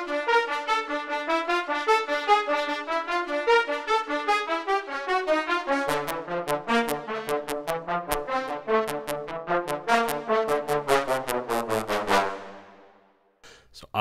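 Sampled orchestral brass ensemble from the Spitfire Symphonic Brass library (horns, trumpets, trombones and cimbassi) playing a fast staccato melody in rapid short notes. About halfway through, the low brass joins with hard, punchy attacks, and the notes die away shortly before the end.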